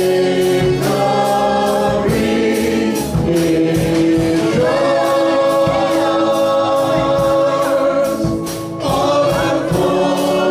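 Live gospel worship song: several voices singing long held notes over a band with electric guitar and a steady beat.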